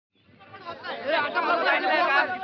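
Several people's voices chattering at once, fading in from silence over about the first second.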